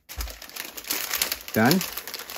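Plastic magazine packaging bag crinkling as a hand rummages inside it: a dense run of crackles.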